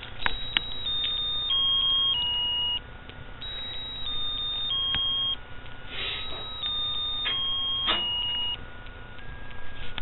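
A plush baby butterfly toy plays an electronic lullaby tune of thin, beep-like notes, its short phrases stepping down in pitch and repeating. A few clicks from the toy being pressed and handled are heard at the start and again near the middle.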